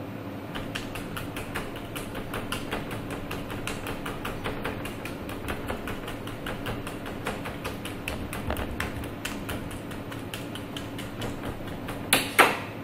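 Quick, irregular light ticks and taps, several a second, from hands tying a coiled ring of fresh sausage with twine on a stainless steel counter. A steady low hum runs underneath.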